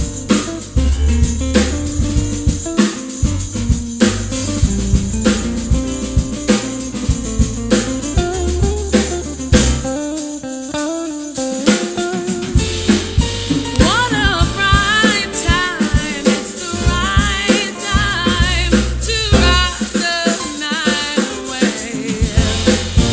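Live R&B band music: a Fender electric guitar plays a lead over drums and keyboard. The low end drops out briefly about ten seconds in, then a woman's voice enters singing runs with wide vibrato over the band.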